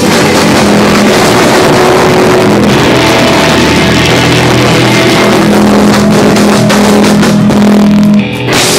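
Live rock band playing loud: electric guitars, bass guitar and drums. A long low note is held for the last few seconds.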